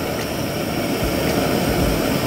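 Handheld kitchen torch flame hissing steadily as it caramelizes cinnamon sugar on an orange slice.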